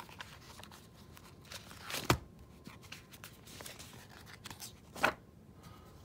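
Paper pages of a ring binder being handled and turned, a soft rustling with two sharper crackles, about two seconds in and again near five seconds.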